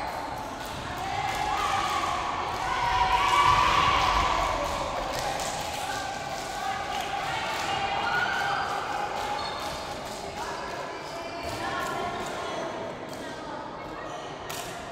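Teenage girls' voices shouting and cheering in a gym hall, loudest about three to four seconds in, with many short sharp knocks throughout.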